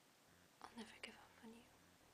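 A few soft whispered words, about a second long, beginning just over half a second in, over near-silent room tone.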